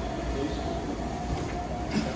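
A steady low rumble with a faint hum underneath, and one short knock near the end as a dumbbell is lifted off its rack.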